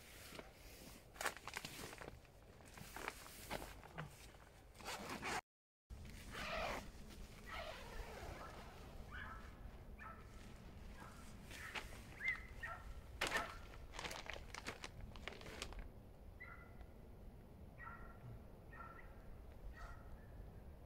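Faint rustling and clicks of tent fabric and clothing being handled. After a cut, more rustling, with short high calls from an animal repeated several times through the second half.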